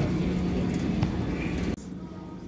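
Airport baggage carousel running: a steady hum and clatter from the moving conveyor, with one sharp click about a second in. It starts and stops abruptly.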